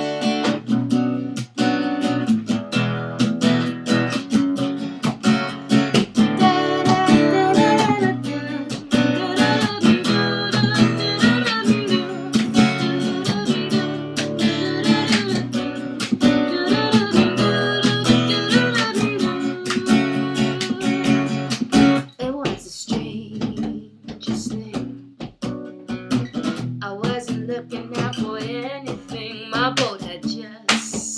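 Acoustic guitar strummed in chords, with a woman singing over it through much of the middle; after about twenty seconds the singing drops away and the guitar goes on more quietly.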